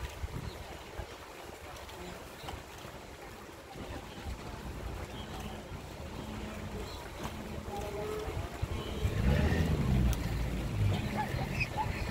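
Wind buffeting the microphone over the distant noise of a wildebeest herd plunging down a bank and crossing a river. Short low-pitched sounds, from the animals or from people, grow louder over the last few seconds.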